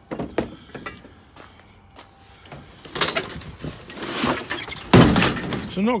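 Pieces of scrap metal clanking and crashing together: a few light knocks at first, then a louder clattering stretch from about three seconds in, with the loudest crash about five seconds in.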